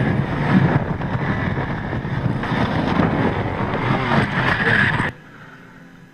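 Loud wind noise on the microphone of a camera riding with a motorcycle during a wheelie clip, cutting off suddenly about five seconds in as the clip ends.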